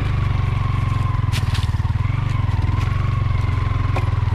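Yamaha Sniper underbone motorcycle's single-cylinder four-stroke engine running steadily while being ridden along a dirt trail. A few short rattles come about a second and a half in.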